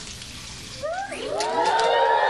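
Studio audience going "aww": many voices gliding up and falling away together, starting under a second in and swelling toward the end.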